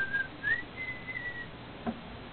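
Whistling: a few held notes that slide up and down, stopping about a second and a half in. A short click near the end.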